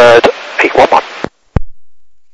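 Air traffic control voice over an airband radio receiver, thin and hissy, finishing a landing clearance and ending about 1.3 seconds in. A short, sharp click follows as the transmission ends.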